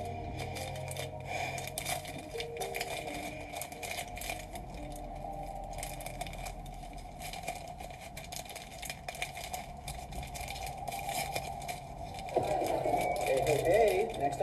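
Scattered small clicks and rustles of close handling over faint background music, with a voice starting near the end.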